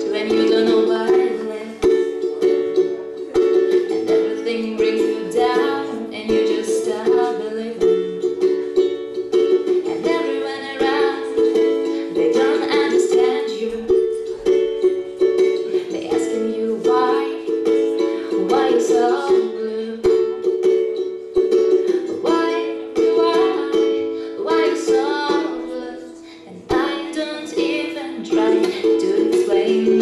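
Solo ukulele strummed, playing chords with no singing, with a brief drop in loudness a few seconds before the end.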